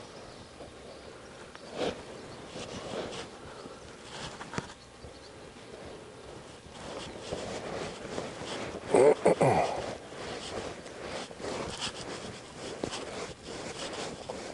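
A young horse moving under saddle on soft arena dirt: scattered hoof steps and tack noises, with a louder sound falling in pitch about nine seconds in.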